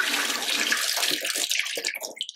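Water pouring from a bowl through a stainless steel mesh strainer of pumpkin seeds and splashing into a steel sink. It is a steady rush that thins to a trickle and drips near the end.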